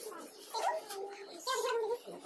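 A high, wavering voice in two short phrases, about half a second in and again near the end.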